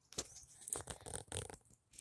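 Footsteps on fallen leaves and grass: a few soft, irregular crunches.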